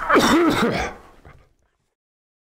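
A man clearing his throat once, briefly. It dies away about a second and a half in.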